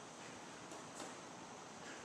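Faint hiss with two soft taps, about a third of the way in and halfway: boxing gloves lightly striking a ball held against a wall.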